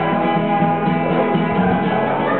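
Acoustic guitar strummed steadily, an instrumental stretch of chords between sung lines.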